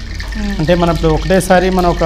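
Speech: a person talking, over a steady low hum.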